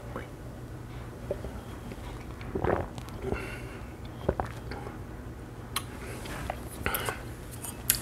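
A man sipping beer from a glass and tasting it, with soft mouth and lip sounds and a few small clicks. A steady low hum runs underneath.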